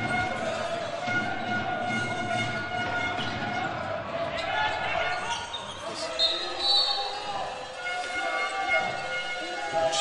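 Indoor hockey being played on a sports-hall floor: sticks clicking against the ball, shoes squeaking and players calling, all echoing in the hall.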